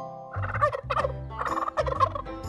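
Turkey gobbling, several quick bursts in a row beginning about a third of a second in.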